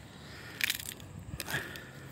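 A crushed dock-weed stem being squeezed and rubbed against the skin of a leg, giving soft crunching with a few short crackles from about half a second in.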